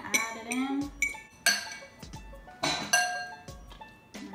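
Several sharp, ringing clinks of a glass bowl and a fork knocking against a mixing bowl as dry ingredients are tipped in and stirred.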